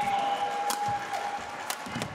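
Badminton rally: two sharp racket strikes on the shuttlecock about a second apart, with a long shoe squeak on the court in the first half.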